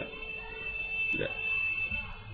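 A steady high-pitched electronic tone, with a short vocal sound from the speaker about a second in.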